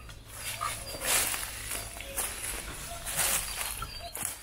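Footsteps rustling and crunching through dry leaf litter, a few irregular steps, the loudest about a second in and again near three seconds.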